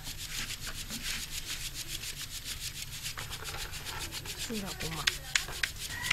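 Flour being sifted through a round hand sieve shaken over a plastic basin: a fast, even rasping rhythm of several strokes a second, with a few sharper knocks near the end.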